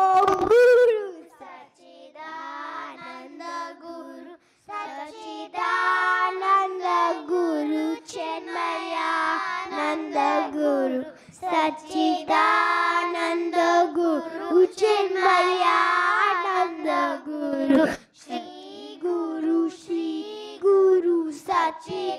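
Group of children singing a bhajan, a Hindu devotional song, together into stage microphones. They sing phrase by phrase, with short breaks between the lines.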